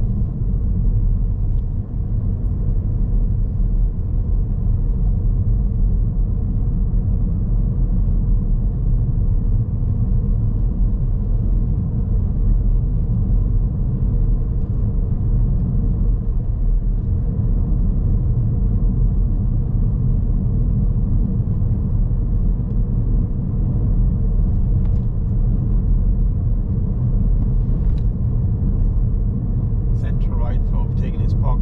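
Steady low rumble of a car being driven, heard from inside the cabin: road and engine noise that holds even throughout.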